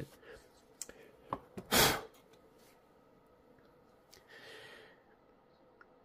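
Faint handling and wiping of a phone screen with a small cloth to clear off dust, with a few light clicks, one short loud puff of air just under two seconds in, and a soft hiss of rubbing or breath about four seconds in.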